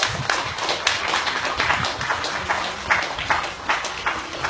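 An audience applauding by hand-clapping, with many separate claps heard distinctly.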